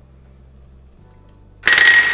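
Faint low hum, then about one and a half seconds in, a sudden loud clatter of metal kitchenware with a bright ringing tone.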